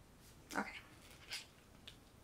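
A brief vocal sound, then a short scrape and a light click as the locked pump head of a glass lotion bottle is twisted up.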